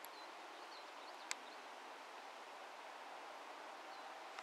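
Faint outdoor background: a steady hiss with a few faint, short high chirps and a single sharp click about a second in.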